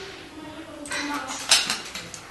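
Go stones clicking and rattling against each other in a stone bowl as a hand moves among them, with one sharp, loudest click about one and a half seconds in.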